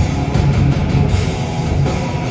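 A rock band playing live and loud, with electric guitars driven through amplifiers over a drum kit, in a heavy rock style.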